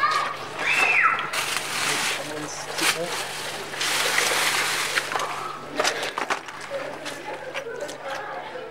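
Water splashing in two bursts, about a second and a half in and again around four to five seconds in, amid background voices.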